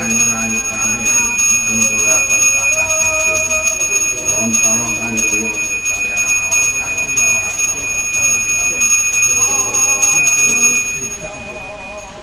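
A priest's brass hand bell (genta) rung continuously and rapidly, its bright steady ring cutting off about eleven seconds in, over a voice chanting a prayer during the Hindu offering rite.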